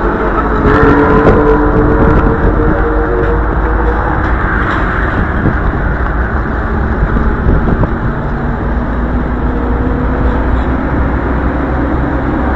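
A motor vehicle's engine running steadily, with a deep continuous rumble and a faint drifting engine hum.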